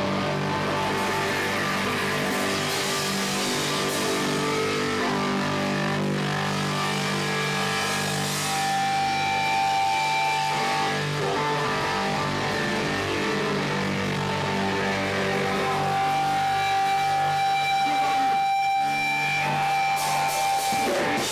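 Hardcore punk band playing live, with distorted electric guitars holding sustained, ringing chords. A steady high feedback tone comes in twice, about eight seconds in and again near the end.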